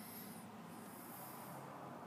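Faint steady hiss of a quiet cab interior with the engine off, with a brief light rustle at the start.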